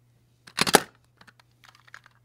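Plastic tape runner picked up off the table: a short, dense clatter of plastic clicks about half a second in, then a few light ticks as it is turned in the hands.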